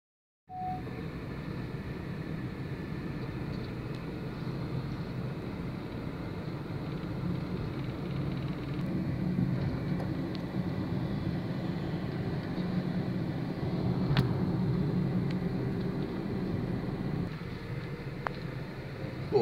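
Steady low outdoor rumble, with a faint sharp click about fourteen seconds in.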